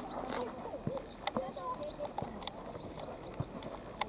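Youth soccer in open play: irregular sharp knocks of the ball being kicked and players' running footsteps, with boys' voices shouting and calling across the pitch.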